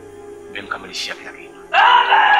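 Background music with steady tones under a voice: short vocal bursts in the middle, then a loud, drawn-out vocal sound starting near the end.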